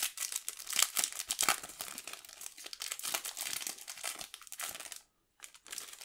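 Foil trading-card booster wrapper crinkling and tearing as it is pulled open by hand; the crackling stops about five seconds in.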